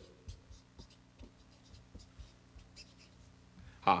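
Felt-tip marker pen writing Chinese characters on paper: a series of short, faint scratching strokes, one for each stroke of the pen.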